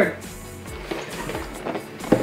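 Soft background music, with a few faint knocks of a plastic keyboard and its cardboard box being handled.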